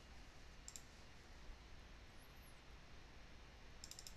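Computer mouse clicks over faint room hiss: a click about 0.7 s in, then a quick double-click near the end.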